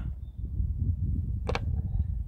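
Low, uneven rumble of wind on the microphone, with one short click about one and a half seconds in.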